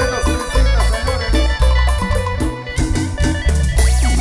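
Live band music with a steady, pulsing bass beat, drum kit and guitar.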